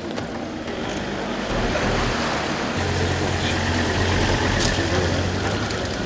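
An engine running steadily, its low hum setting in about a second and a half in and growing stronger about halfway through, over a constant wash of outdoor noise.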